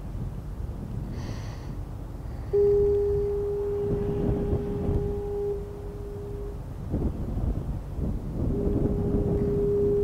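A deep, steady horn sounds two long blasts, the first lasting about four seconds and the second starting near the end, over a constant low rumble.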